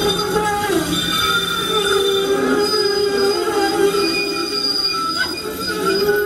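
Steel wheels of a SEPTA Kawasaki light-rail trolley squealing as the car rounds a tight curve of track, with several shrill tones wavering and overlapping.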